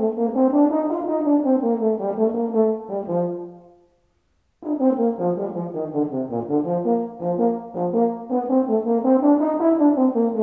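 Solo euphonium sight-reading a march at march tempo: quick, separated notes running through scale and arpeggio figures. The playing fades out a little under four seconds in and starts again abruptly about a second later.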